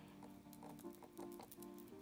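Quiet background music with held notes that change pitch a few times, under faint rapid pats of a damp makeup sponge dabbed against the face.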